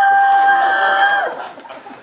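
A man's high falsetto "woo" cry, swooping up into one long held note that breaks off a little over a second in.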